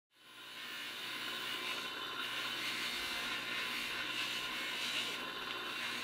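Small electric rotary carving tool running steadily with a thin, even whir as it grinds stone, fading in during the first second.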